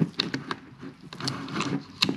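Small sharp clicks and scrapes of a flathead screwdriver and gloved fingers working a throttle cable end into a plastic BMW ASC throttle actuator housing, seating the cable.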